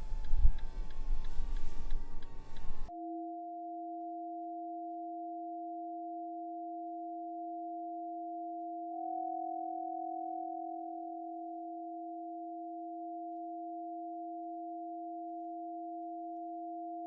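Two steady electronic sine tones, a low one and one about an octave above it, held as a drone, with a slight swell a little past the middle. They are preceded by about three seconds of low noisy rumble with faint ticking that cuts off abruptly.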